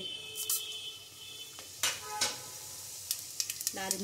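Whole spices for a tadka (cumin, cloves, cardamom, cinnamon, bay leaf) sizzling in hot oil in a pressure cooker, with scattered sharp crackles and pops.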